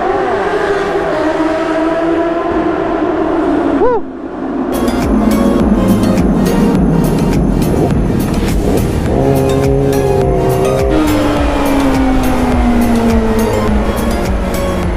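Inline-four sport motorcycle engine running inside a road tunnel, its pitch falling over the first four seconds. From about five seconds in, background music with a steady beat comes in and carries on to the end.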